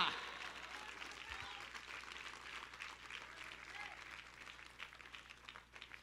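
Congregation applauding, faint, with a voice or two calling out; the clapping dies away near the end.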